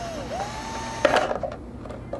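Cordless drill with a thin bit drilling a hole in the bottom of a plastic mold box: the motor whine winds down, spins back up with a rising pitch and runs steady, then stops with a sharp click and a brief clatter about a second in.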